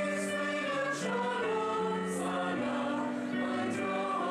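Mixed choir of men's and women's voices singing in parts, holding notes that change every half second to a second, with crisp 's' sounds cutting through now and then.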